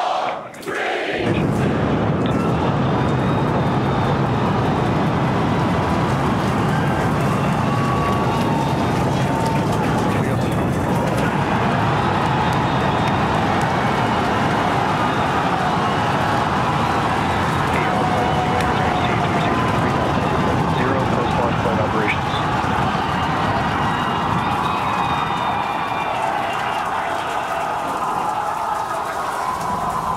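Starship's Super Heavy booster firing its 33 Raptor engines through ignition and liftoff: a loud, steady noise that starts about a second in. Cheering and shouting voices ride over it.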